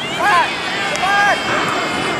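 Two short, high-pitched shouted calls from young voices on a football pitch, the first a quarter second in and the second about a second in, with a faint steady engine-like drone underneath.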